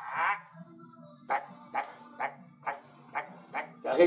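A man's voice mimicking the stiff, aching body of a 50-year-old getting out of bed: one open-mouthed cry, then a string of six short grunts about half a second apart.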